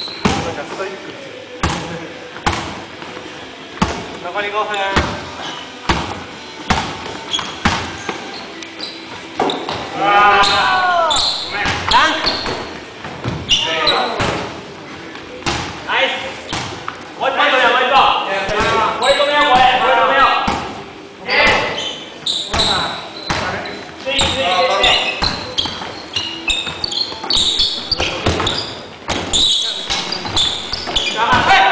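Basketballs bouncing on a wooden gym floor: many irregular thuds throughout, with the sharp ring of an indoor hall, mixed with players' shouts and calls.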